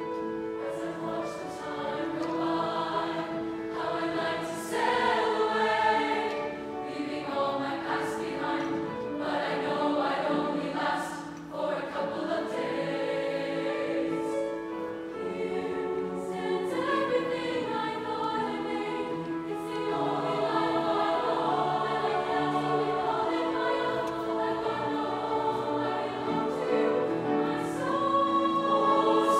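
A large youth choir of mixed voices singing in harmony with piano accompaniment, growing somewhat louder in the last third.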